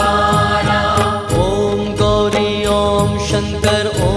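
Devotional Shiv dhun: a male voice singing a mantra-like chant in long held notes over a steady percussion beat.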